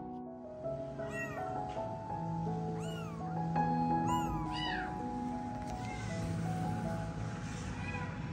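Newborn kittens mewing: four or five short, high calls that rise and fall, in the first five seconds or so, over background music with long held notes.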